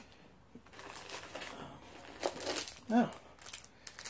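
Faint crinkling and rustling of packaging being handled, a run of small crackles lasting about two seconds.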